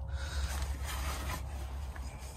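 Faint rustling and handling noise over a low steady rumble.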